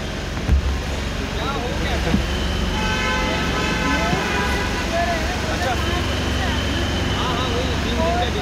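Traffic rumble and overlapping voices, with a vehicle horn held for about two seconds near the middle.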